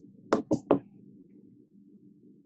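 Three quick, sharp taps close together, about a fifth of a second apart, over a faint steady low hum.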